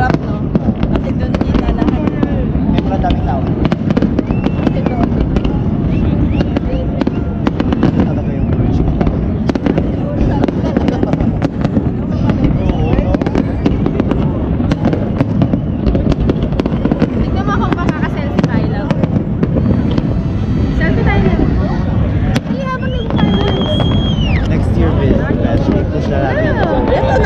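Fireworks display going off in rapid, continuous bangs and crackles, with a crowd's voices underneath.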